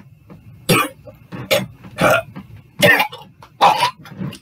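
A man coughing and gagging as if choking: about five loud, hacking coughs, a little under a second apart.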